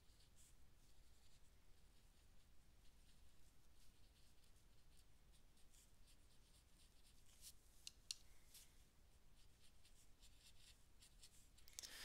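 Near silence, with faint, scattered scratchy strokes of a small paintbrush on paper.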